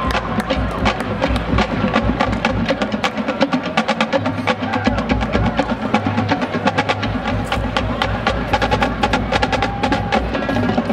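A marching band's drumline playing a fast cadence: a rapid, even stream of snare and stick strokes over bass drums, the low drums dropping out for a couple of seconds in the middle.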